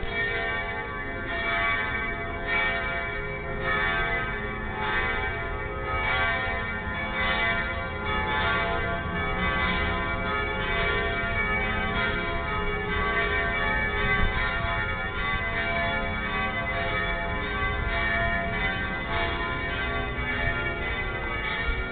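Three church bells tolling the death knell (le glas) before a funeral, struck one after another about once a second. Each ringing overlaps the next, so the sound is a continuous, many-toned hum.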